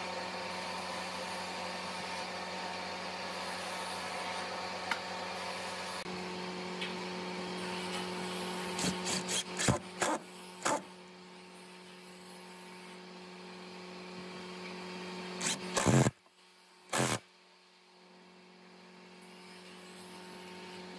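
Makita 18V cordless driver driving screws through metal corner brackets into the wooden table frame, in short bursts about halfway through and again, loudest, a few seconds before the end. A steady hum runs underneath and drops away after the loudest burst.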